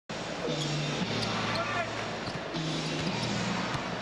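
Live arena sound of an NBA basketball game: crowd noise with a basketball being dribbled on the hardwood in a few faint thuds. Held low tones sound in two stretches.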